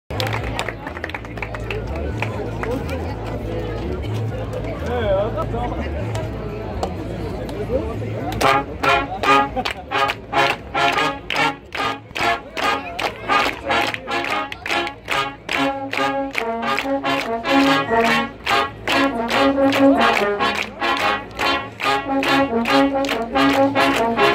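Voices chattering at first, then about eight seconds in a large brass band with snare drums and toms strikes up: trumpets, trombones and tubas playing over a steady, fast drum beat.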